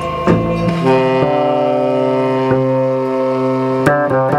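Live free jazz: a saxophone holds one long, low note for about three seconds over sparse drum hits. Plucked double bass notes sound at the start.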